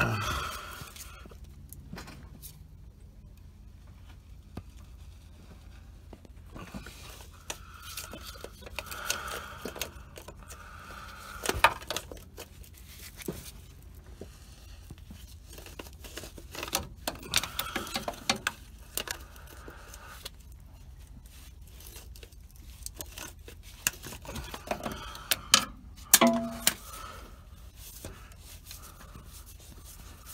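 Oil filter wrench and a spin-on Motorcraft FL-1A oil filter being worked loose by hand: scattered metallic clicks and scrapes with a few sharper knocks.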